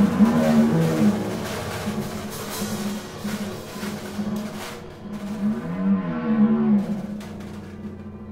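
Freely improvised music for piano, drum kit and harp: low, moaning tones that slide up and down in pitch, broken by scattered drum and cymbal hits.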